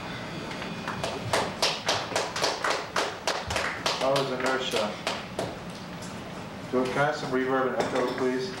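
A few people clapping in quick, even claps, thinning out and stopping about five and a half seconds in, with men's voices talking over and after it.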